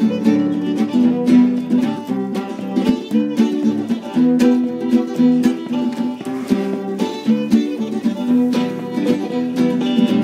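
Acoustic guitar and fiddle playing an old-time tune together, the fiddle carrying the melody over the guitar's steady rhythm.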